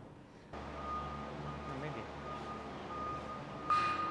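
Scissor lift's warning alarm sounding a steady high electronic tone over a low machinery hum. Both come in about half a second in, and the tone gets louder near the end, where a sharp burst of noise sets in.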